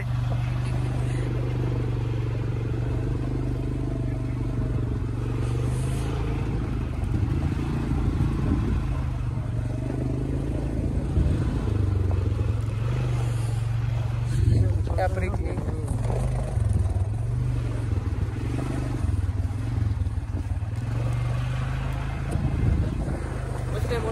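Polaris Sportsman quad bike (ATV) engine running at a steady speed while riding along a gravel track, a constant low drone with little change in pitch.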